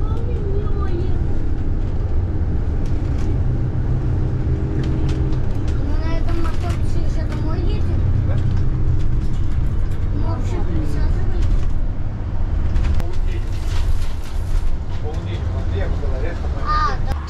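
Cabin noise inside a moving hybrid diesel-electric double-decker bus: a steady low rumble of the drivetrain and road with a steady hum over it. Passengers talk faintly now and then, and there are a few light rattles near the end.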